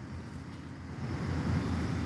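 Low outdoor rumble that grows slightly louder in the second half.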